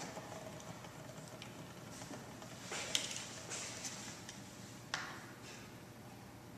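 Plastic water bottles being handled, with a few faint clicks and crinkles about three and five seconds in.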